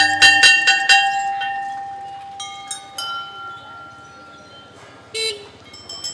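A large hanging temple bell struck several times in quick succession by hand-swinging its clapper, its ringing fading slowly over the next few seconds. Smaller bells are struck twice a little later. A short louder tone sounds near the end.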